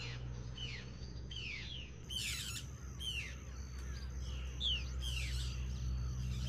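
Birds calling: a repeated whistled note sliding downward, sounding about every half second to a second, with a harsher call about two seconds in, over a low steady hum.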